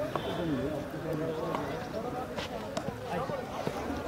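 Indistinct voices of people talking in the background, with several pitches overlapping, and a few faint clicks.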